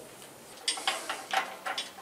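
A few light metallic clinks and knocks as steel machine parts (shaft, bearing and pulley) are handled and set down, starting just under a second in.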